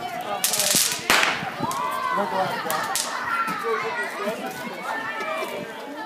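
Background voices and children's shouts, with a brief rush of noise and a sharp crack about a second in.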